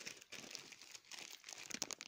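A clear plastic zip bag holding thread reels being handled, crinkling in faint, irregular crackles, with a few sharper crackles near the end.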